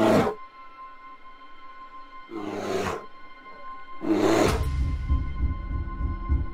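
Film soundtrack of deep, growling animal roars: one dies away just after the start, then two more come about 2.5 and 4 seconds in, over a steady eerie music drone. From about four and a half seconds a loud, low, throbbing pulse like a heartbeat begins.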